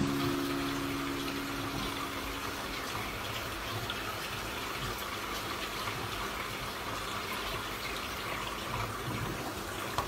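Steady rushing and bubbling of water in an aquarium, with a held musical note fading out over the first couple of seconds.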